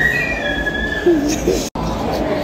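Busy restaurant din: indistinct background voices, with a high, slightly rising squeal during the first second. The sound cuts out for an instant near the end.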